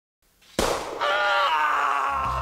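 Opening sound effect: a sudden noisy hit about half a second in, then a held chord of several pitches that wavers slightly and slowly fades.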